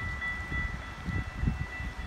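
Distant approaching Amtrak passenger train: a low, uneven rumble with a steady, faint high-pitched ringing tone.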